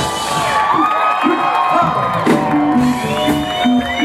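A live band's song ends on a held chord with a cymbal wash, followed by audience cheering and whoops. About two and a half seconds in, the band starts a short repeating low riff.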